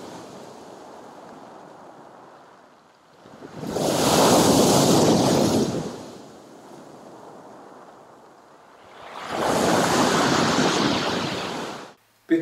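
Sea waves breaking on a pebble beach and against the base of a concrete pier: two big breakers, about four and nine and a half seconds in, each swelling and then fading, with a steady wash of surf between them.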